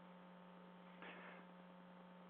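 Near silence with a faint, steady low electrical hum in the recording, and one faint soft noise about a second in.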